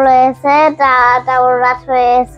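A young child singing a short phrase over and over in a high sing-song voice, one held syllable after another with brief breaks.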